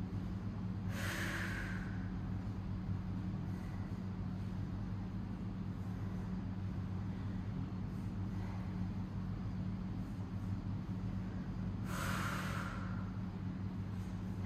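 Two forceful exhalations of exertion from a person doing banded glute bridges, about a second in and again near the end, over a steady low hum.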